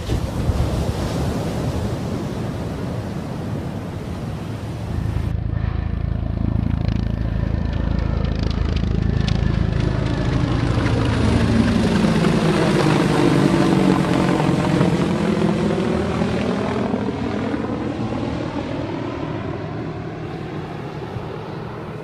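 Helicopter passing low overhead. Its rotor and engine noise grows to its loudest about halfway through, with a sweeping, phasing quality as it goes over, then fades as it moves away.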